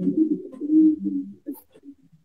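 A person's low, muffled closed-mouth murmur, stepping up and down in pitch for about a second and a half before trailing off in a few short blips.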